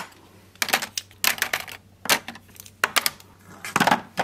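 Plastic eye pencils and mascara tubes clicking and clattering as they are dropped into a clear acrylic drawer organiser: a string of short, light clacks, several in quick succession.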